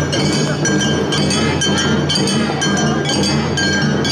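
Awa odori street-band music, led by the clink of a kane hand gong struck in a quick, even beat over the rest of the band.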